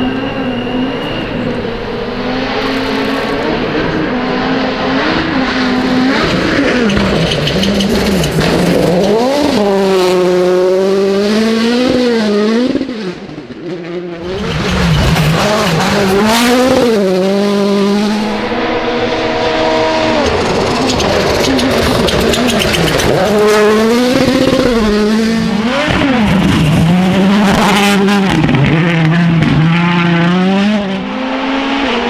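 Hyundai i20 Coupe WRC rally cars driven flat out, the turbocharged four-cylinder engine's revs climbing and dropping sharply again and again through quick gear changes. One car passes very close about 16 seconds in.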